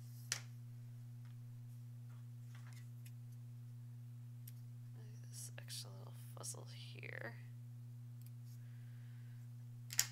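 Quiet handling of a hand-embroidery hoop, needle and floss: a click just after the start, then soft rustles and taps with a brief low murmur in the middle, over a steady low hum.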